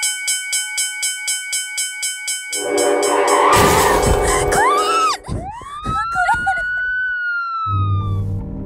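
A pulsing tone in the score, about three pulses a second, breaks off about two and a half seconds in for a loud crash and glass shattering. Then comes a single siren-like wail that rises and then slowly falls away near the end.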